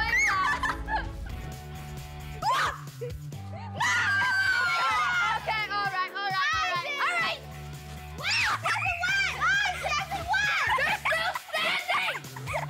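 Children shouting, squealing and laughing in bursts over background music with steady low bass notes.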